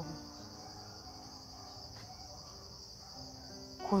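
Steady, high-pitched chirring of crickets, unbroken throughout.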